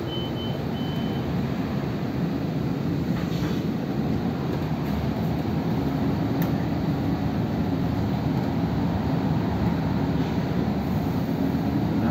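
Inside a city bus as it drives along: steady engine and road rumble, with two short high beeps in the first second.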